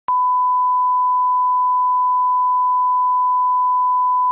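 Steady 1 kHz line-up tone of a bars-and-tone leader: one unbroken beep, switching on with a faint click just after the start.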